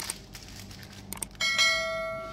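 A bell chime sound effect that goes with a subscribe-button animation: one ring about one and a half seconds in, holding several steady tones that fade slowly.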